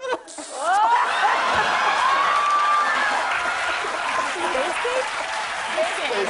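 Studio audience and panel laughing hard, with whoops and applause, swelling up about a second in and staying loud.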